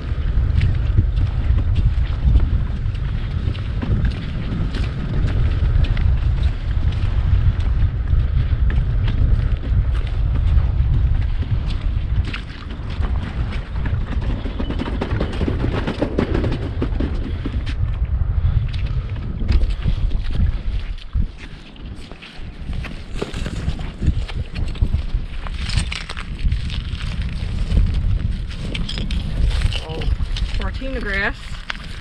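Wind buffeting the camera's microphone outdoors: a loud, gusting low rumble that eases briefly about two thirds of the way through.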